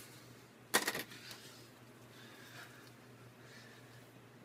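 A quick cluster of sharp clicks and crackles about a second in, from spilled saltine crackers being handled, then faint rustling in a quiet room.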